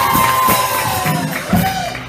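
Audience cheering after an introduction, with a long drawn-out whoop that rises and slowly falls, then a shorter whoop near the end.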